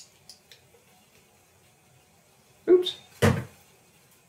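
A few faint small clicks, then two loud knocks about half a second apart near the end as a bottle is set down on the kitchen countertop.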